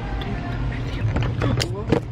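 A woman's voice in short murmured sounds, ending in a gasp near the end, over a steady low background hum.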